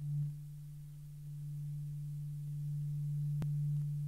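A single low, steady, almost pure tone held unbroken as the opening drone of the song, swelling just after it starts. A brief faint click comes about three and a half seconds in.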